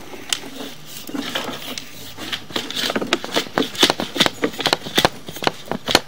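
Drain inspection camera being pushed along the pipe, with irregular clicks and knocks: sparse at first, then quicker and louder from about halfway through.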